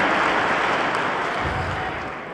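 A large congregation applauding in a big hall, the applause dying away steadily.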